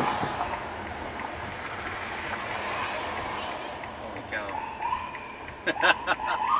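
Busy city street traffic heard from inside a slow-moving car's cabin. A siren tone sounds briefly about five seconds in, with a few sharp clicks or knocks just before the end.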